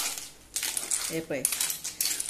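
Clam shells clattering and clinking against each other and the metal pan as they are stirred with a spoon: a dense run of sharp clicks.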